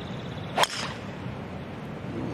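A golf club striking the ball on a tee shot: one sharp crack about half a second in, over a steady outdoor background.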